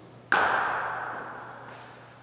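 Hard cricket ball struck by a willow bat: one sharp crack about a third of a second in, its echo dying away over more than a second.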